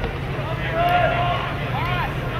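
Players and spectators shouting and calling out during play, with one long held shout about a second in, over a steady low rumble.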